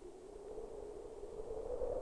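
A faint, hollow drone on the soundtrack, sinking a little in pitch and then slowly rising again.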